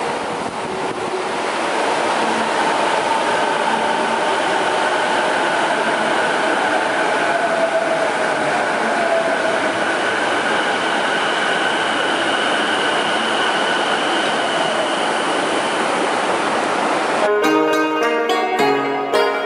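Subway train moving along a station platform: a steady running noise with electric motor whines, one of which falls in pitch about halfway through.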